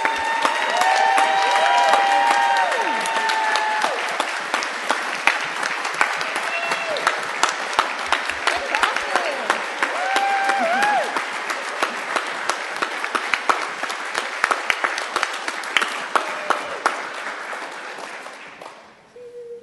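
Audience applauding, with a few voices cheering over it in the first few seconds and again about ten seconds in; the applause fades out near the end.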